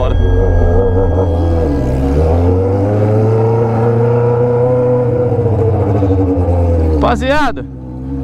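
Honda Hornet inline-four motorcycle with a straight 3-inch pipe and no muffler, ridden at low speed: the engine note climbs about two seconds in, holds, then drops back as the throttle is eased off near the end.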